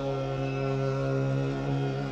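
Pakistani folk music: one long, steady held note over a drone, with no words sung.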